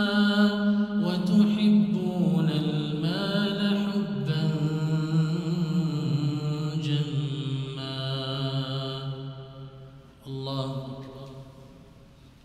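A male imam's melodic Quran recitation in Arabic, chanted into a microphone with long held notes that slide gradually lower in pitch. The recitation breaks off about ten seconds in, followed by one short last phrase that fades away.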